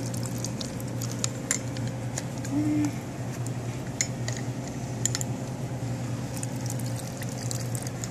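Fresh lemon juice squeezed from a hand-held citrus press, pouring and dripping into a stainless steel cocktail mixing tin, with scattered small clicks of the press and tin. A steady low hum runs underneath.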